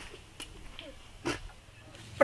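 Quiet outdoor background with faint voices and a couple of short clicks, the loudest a little past a second in.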